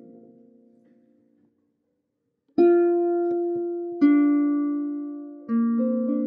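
Plucked harp chords from the end of one piece die away into about a second of silence, then a new harp piece begins with a plucked chord followed by two more, each ringing out slowly.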